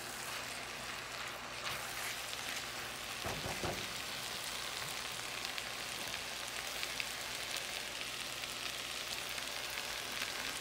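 Rice, chicken and sauce sizzling in a frying pan: a steady frying hiss with scattered small pops and crackles, and a brief low thud about three and a half seconds in.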